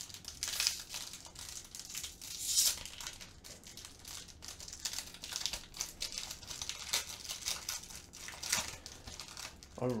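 A foil trading-card pack wrapper being torn open and crinkled by hand, as irregular crackling with louder bursts of tearing foil every second or two.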